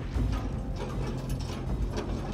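Hand crank and propeller-shaft gearing of the Hunley submarine turning, a steady mechanical clicking and ratcheting over a low rumble.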